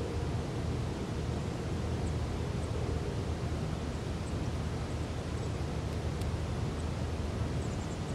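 Steady outdoor background noise, a low rumble with a faint hiss, with no distinct event.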